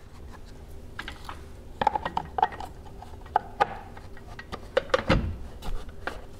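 Plastic battery-box cover being fitted over a trailer's breakaway battery: scattered clicks, knocks and rubbing of plastic. The loudest is a dull thump about five seconds in as the cover is pressed down.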